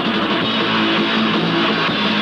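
Hardcore punk band playing live: electric guitar and bass in a loud, steady instrumental passage, without vocals.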